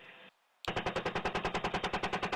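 Helicopter 30 mm chain gun firing in rapid bursts of about ten rounds a second: the tail of one burst fades out just after the start, then after a brief gap a new burst starts about two-thirds of a second in.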